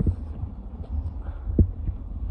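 Low, uneven buffeting rumble on the microphone, with two soft thumps, the louder about one and a half seconds in.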